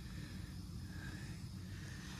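Faint outdoor background noise with a low rumble, a few faint brief tones and no distinct sound event.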